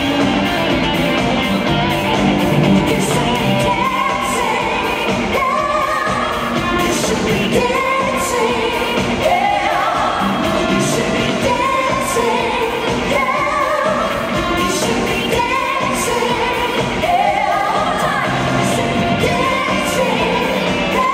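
1970s-style pop song, sung live into microphones over a steady beat and amplified through the hall's sound system.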